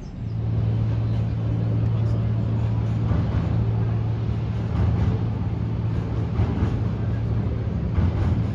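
Steady low hum of Porto Metro light-rail trains running across a bridge, with people's voices mixed in.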